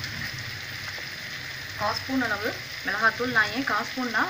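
Onions, tomatoes, chillies and whole spices frying in hot oil in a pot, with a steady sizzle. From about two seconds in, a person's voice talks over the sizzling.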